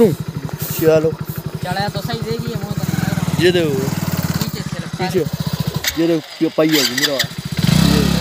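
Motorcycle engine running with a rapid, even beat that grows stronger about three seconds in. It cuts out about six seconds in and starts up again near the end.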